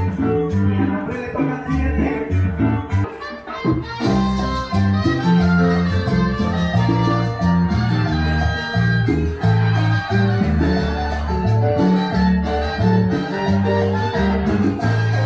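Salsa-style Latin music playing, with a prominent bass line.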